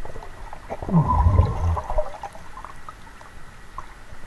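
Muffled underwater gurgling with a low, voice-like tone that drops in pitch, about a second in and lasting about a second, with faint clicks and bubbling around it.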